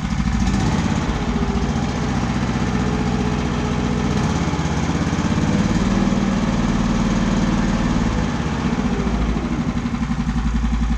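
The small petrol engine of a large-scale RC truck model runs steadily with the throttle opened in first gear, driving its drivetrain. The engine note swells a little about half a second in and again around six seconds.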